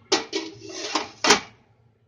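Stainless steel steamer tray holding ceramic custard cups being set down into a stainless pot: metal scraping and clanking for about a second and a half, with a sharp clank near the start and another about a second later.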